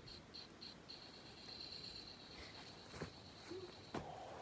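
Faint electronic beeping from a toy grenade that has just been set off: four short high beeps, then one long steady high beep held for about three seconds, which stops near the end.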